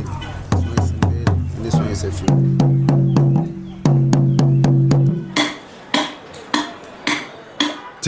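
Asante atumpan talking drums being struck in a quick run of strokes, with a steady ringing pitch under the fast even strokes in the middle. Near the end they slow to single strokes about half a second apart.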